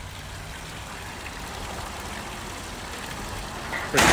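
Water pouring from a pipe outlet into an outdoor pond tank, a steady splashing with a low rumble underneath.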